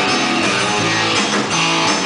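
Live band playing an instrumental passage with electric guitar to the fore over steady bass notes.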